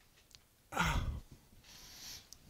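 A man's brief voiced exhale, falling in pitch, about three-quarters of a second in, followed by faint rustling near the end.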